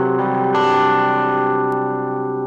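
Electric guitar played through a small Behringer guitar combo amp with its overdrive on: a distorted chord rings, a fresh chord is struck about half a second in and left to ring, slowly fading.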